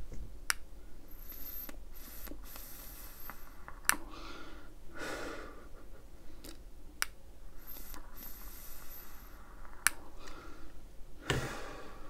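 Someone taking two long draws on a vape, each followed by an exhale, quiet and breathy, with a few sharp clicks in between.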